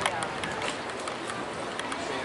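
Footsteps clicking on stone paving, irregular, over a steady outdoor background with people's voices in it.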